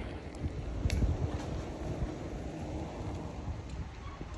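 Wind buffeting the microphone of a camera carried on a moving bicycle, an uneven low rush of noise, with one faint click about a second in.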